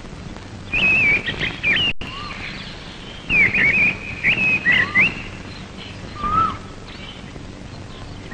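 Bird song: two phrases of quick warbling chirps, the first about a second long and the second about two seconds, with a few lower single notes scattered after them. The sound cuts out for an instant about two seconds in.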